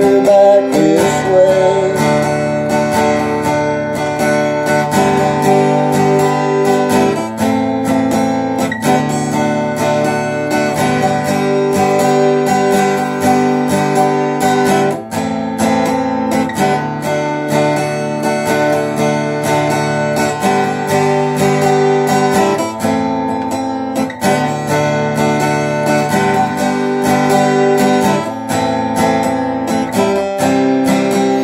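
Acoustic guitar strummed steadily through a chord progression in an instrumental passage, the chords changing every second or two.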